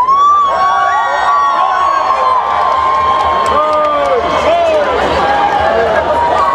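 Large concert crowd shouting "hej" together on cue, many voices rising at once into a long held shout for about three and a half seconds, then breaking into scattered cheers and whoops.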